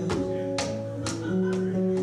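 Guitar strummed in chords during a live song, with sharp strokes about every half second over ringing, sustained notes.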